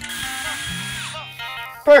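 Cordless drill with a small bit boring a pilot hole through a titanium tube, the motor whining steadily over the grinding of the bit, then winding down with a falling pitch about a second in as the bit breaks through. Background music plays underneath.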